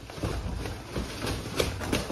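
Chilean blue eagle buzzard (black-chested buzzard-eagle) flapping its wings in a run of heavy, irregular wingbeats as it bates off the perch.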